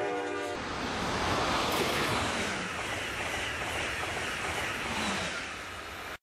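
Amtrak Pacific Surfliner bilevel passenger cars rolling past with a steady rushing noise of wheels on rail. The train's horn, a steady chord, cuts off about half a second in.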